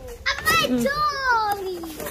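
A young child's voice in high, drawn-out exclamations without clear words, the longest one falling in pitch.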